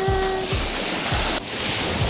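Small sea waves washing onto a sandy beach, a steady rush with wind on the microphone. A held note of background music fades out about half a second in.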